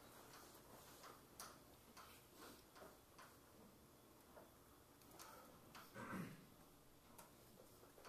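Chalk on a blackboard as an equation is written: faint, irregular taps and clicks. About six seconds in there is a brief, louder muffled sound.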